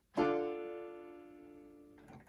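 A D chord played on a RockJam electronic keyboard, struck once just after the start and left to ring, fading slowly.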